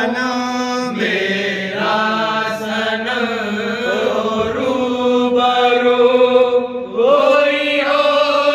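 A man's voice singing a Sufi kalam in long, held, wavering notes over a steady low drone, with a short break about seven seconds in.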